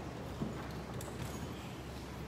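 A few faint knocks over a steady low hum.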